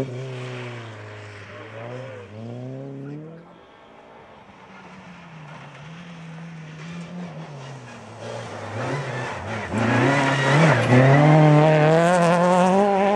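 Rally car engines on a gravel stage. A classic Ford Escort rally car pulls away through gear changes and fades out over the first few seconds. Then a VW Golf rally car's engine comes in and grows louder as it approaches, loudest near the end.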